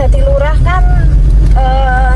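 Steady low rumble of a car's engine and tyres heard from inside the cabin while driving, with a voice holding long, steady pitched notes over it.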